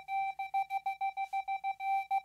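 Rapid electronic beeping at one steady pitch, about eight beeps a second.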